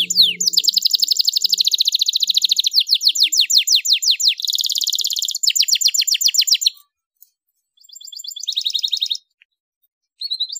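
Canary singing fast trills of repeated downward-sweeping notes, one rolled phrase after another. The song stops about seven seconds in and comes back briefly with one shorter trill.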